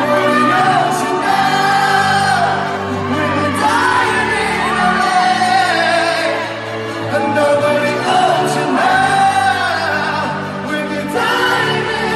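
Live concert music heard in a large arena: a male singer's voice over sustained band accompaniment.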